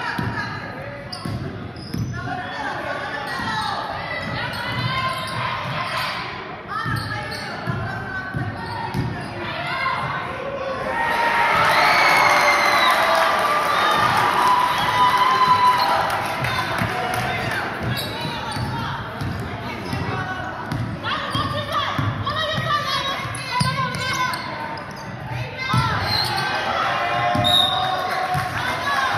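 A basketball being dribbled on a hardwood gym floor during play, a string of bounces, with players and spectators calling out in the large, echoing gym. The voices get louder for several seconds about eleven seconds in.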